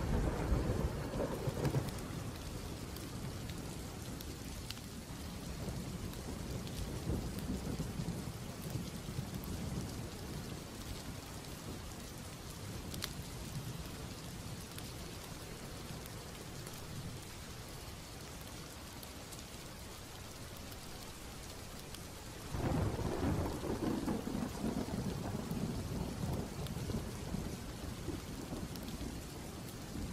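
Steady rain with thunder: a low rumble at the start dies away over several seconds, and another starts suddenly about three-quarters of the way through and rolls on.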